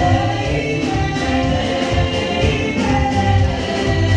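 Live gospel worship music: a group of voices singing together over keyboard accompaniment with a steady beat.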